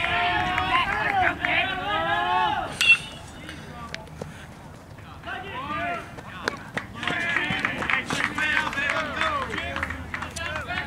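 Spectators shouting and calling out, cut by one sharp metal-bat ping on the ball about three seconds in. After a quieter few seconds the shouting and cheering rise again as the batter runs.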